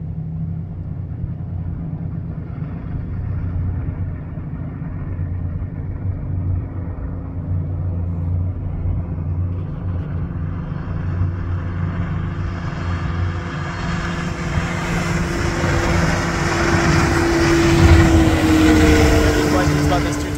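A 250 hp Mercury outboard motor running steadily, with wind and water noise growing louder over the second half. An engine whine climbs slightly and then drops near the end.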